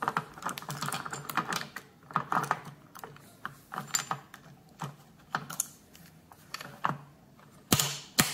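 Locking fuel cap on a Triumph Thruxton R tank being installed with its key: a run of small irregular clicks and rattles as the key turns in the lock and the cap seats. Near the end a sharper, louder metallic click as the chrome Monza flip cover is shut.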